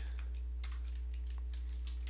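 Typing on a computer keyboard: about half a dozen faint key clicks, spread unevenly, over a steady low hum.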